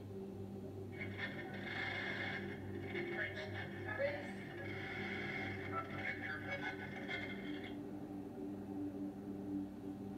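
Television sound of a paranormal show replaying an audio recording said to hold a ghostly voice calling a name. The playback is a hissy stretch that starts about a second in and stops near the eight-second mark, over a steady low hum.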